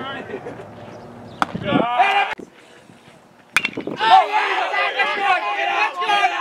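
A baseball bat strikes the ball with a single sharp crack about three and a half seconds in. Loud voices call out right after it. A lighter sharp knock comes earlier, about a second and a half in, followed by a short voice.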